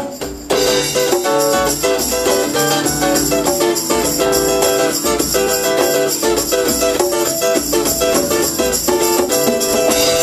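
A live band plays an instrumental stretch with no singing: strummed acoustic guitar over drum kit and congas, with jingling tambourine. The music dips briefly at the very start, then runs on at a steady groove.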